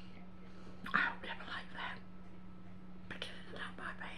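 Quiet whispered speech in two short stretches, about a second in and again near the end, over a steady low hum.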